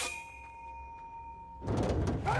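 A sword fight's metallic clang that rings on as a steady two-tone ring for about a second and a half. Then, near the end, a sudden loud burst of quick crashing hits.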